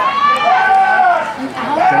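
A spectator's voice crying out near the microphone in long, drawn-out, high-pitched exclamations as a pass is thrown and intercepted.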